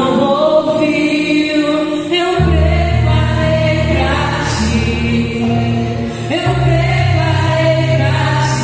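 A woman singing into a handheld microphone, amplified through a PA, over a musical accompaniment of sustained low chords that change about two and a half seconds in and again about six and a half seconds in.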